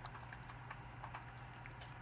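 Faint, scattered light clicks and taps of a plastic spoon against an ice cream cup during eating, over a steady low hum.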